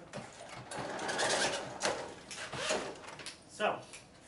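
Electric projection screen rolling up into its housing, its motor whirring steadily for about two seconds.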